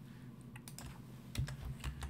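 Several faint, scattered clicks of a computer keyboard as keys are pressed to change the slide.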